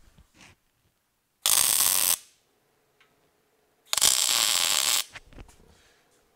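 Two short MIG tack welds on steel tubing: the welding arc crackles and hisses for under a second, then again for about a second a couple of seconds later.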